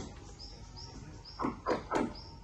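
Birds calling: loud short calls that fall steeply in pitch, one right at the start and three in quick succession in the second half, over faint high chirping.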